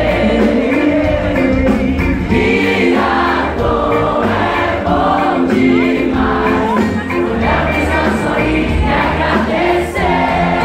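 Live pop band music: several voices singing together over guitars, heard from within the audience.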